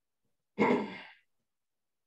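A person's single short sigh into a microphone, about half a second long, loud at first and then fading.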